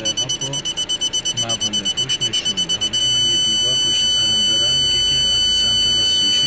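Saipa Quick's reverse parking-sensor buzzer beeping quickly, about seven beeps a second, then changing to one continuous high tone about three seconds in: the rear obstacle is only about a third of a metre away.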